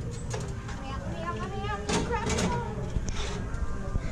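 Children's voices making wordless sounds and chatter, high-pitched, over a steady low rumble, with a sharp knock about two seconds in.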